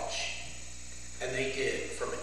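A man's voice speaking in short phrases, one about a second in, over a steady low electrical hum.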